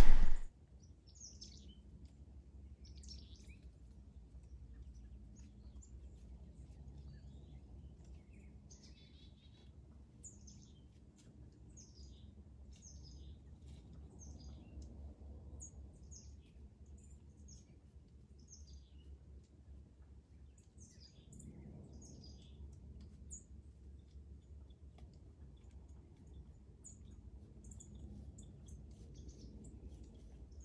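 Faint songbird chirps outdoors: short, high, downward-sliding calls repeating every second or so, over a faint steady low rumble.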